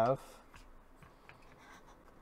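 Faint rubbing and a few small clicks of hands handling a plastic telescoping phone tripod. The tail of a spoken word comes right at the start.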